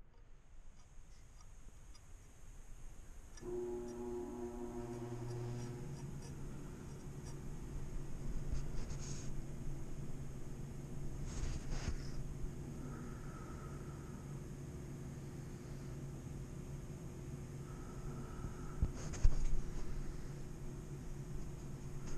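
A kitchen knife being handled and fitted into the clamp of a Wicked Edge guided sharpener: a few short scrapes and clicks, the loudest near the end. A steady low hum starts a few seconds in.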